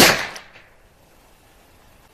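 A single shot from a Taurus Judge revolver firing .45 Colt: one sharp, loud report at the very start, ringing away over about half a second.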